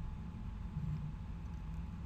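Faint steady room tone: a low hum with light hiss and no distinct events.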